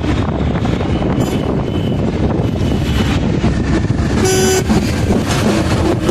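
Road traffic noise heard from inside a moving car, a steady rumble of engine and tyres, with one short vehicle horn honk about four seconds in.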